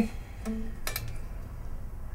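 An electric guitar string is plucked briefly and damped about half a second in, followed by a single sharp click, over a low background hum.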